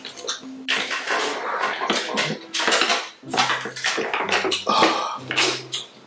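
Close-miked eating sounds: wet chewing and lip-smacking on spicy pepper snail, with a few short hummed "mm"s of enjoyment in the second half.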